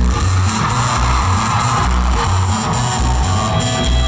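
A live rock band playing without vocals, with the electric bass guitar's notes prominent in a steady rhythmic line under guitars and drums. A wash of sound swells and fades over the first couple of seconds.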